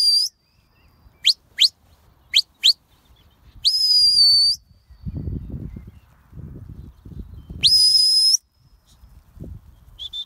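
Shepherd's whistle commands to a working sheepdog: two pairs of short rising peeps, then a long held whistle, and near the end another long whistle that rises and then holds. A low rumble sounds between the long whistles.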